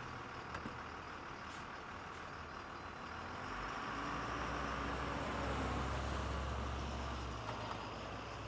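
Bus engine rumbling over street traffic noise, swelling about halfway through as it pulls away, then easing off near the end.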